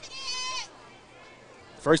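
A single high-pitched shout from the crowd, held for about half a second near the start, over a low murmur from the stands.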